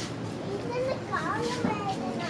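Unintelligible high-pitched voices chattering and calling, over a steady hum of city background noise.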